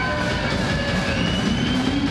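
Live heavy rock band playing loud, with distorted electric guitars held in a steady wall of sound; drawn-out tones slide slowly in pitch over it.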